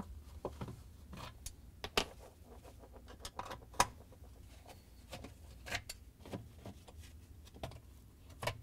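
Scattered light clicks and taps, irregularly spaced, as a Torx 20 screwdriver takes screws out of a dishwasher's plastic pump housing cover and a gloved hand handles them.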